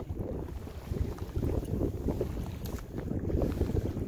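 Wind buffeting the microphone, a low, uneven rumble, on a boat drifting in a breeze.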